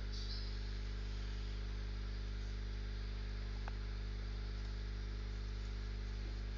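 Steady electrical mains hum with its stacked overtones under a faint even hiss, and one faint tick a little past halfway.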